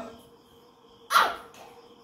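One short, sharp bark-like yelp about a second in, dropping quickly in pitch.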